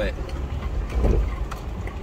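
Lexus GX470's V8 engine pulling steadily under load up a steep, rutted dirt grade, a low steady rumble heard from inside the cabin.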